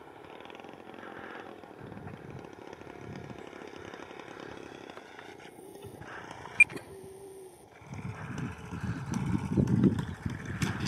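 Radio-controlled model P-47's internal-combustion engine running at low throttle on the landing approach, with one sharp click about two-thirds of the way through. Near the end the sound grows louder into a rough low rumble as the model touches down and rolls along the grass strip.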